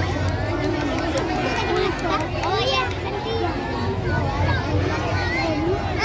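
Crowd of children chattering and calling out, many voices overlapping into a steady babble.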